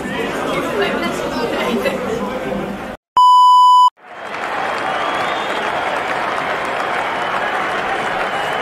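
A loud, steady electronic beep lasting under a second, about three seconds in, set between short gaps of silence. Around it is crowd chatter, then crowd noise with applause swelling back in after it.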